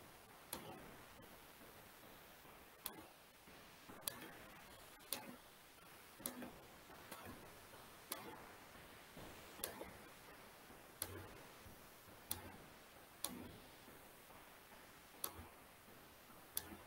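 Faint, single computer-mouse clicks, about one a second and unevenly spaced, over quiet room tone.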